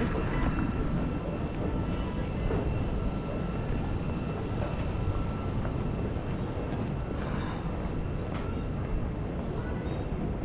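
Steady city street ambience: a continuous low rumble of traffic and urban noise, with a few faint steady tones and occasional light clicks.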